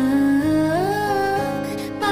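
Female voice singing a wordless, hummed melody over acoustic guitar and keyboard. It holds a low note, then glides up about half a second in.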